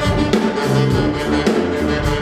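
Live brass band with drums playing: saxophone, trumpets and trombone over a low tuba line, with drum hits keeping a steady beat.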